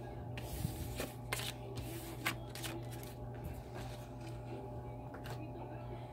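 A spread of oracle cards being gathered up off a wooden surface and handled, with scattered light clicks and slides over a steady low hum.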